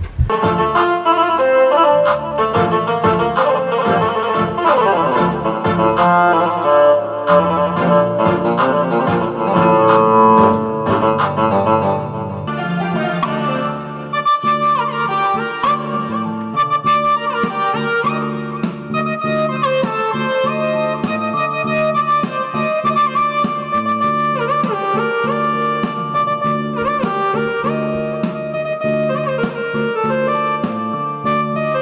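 Ketron electronic keyboard playing an Arabic-style melody: a fast run of notes for about the first twelve seconds, then a slower melody over held low notes.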